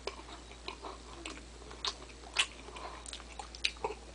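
Close-up chewing while eating sausage by hand: irregular mouth clicks and smacks, a few sharper ones past the middle and near the end.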